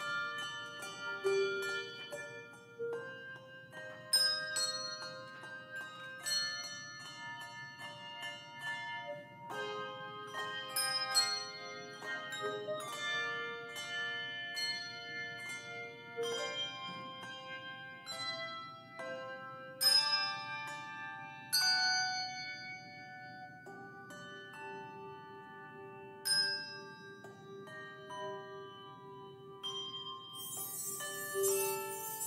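Handbell choir playing: many bells struck and left ringing, their tones overlapping, with a low bell note held through the last few seconds.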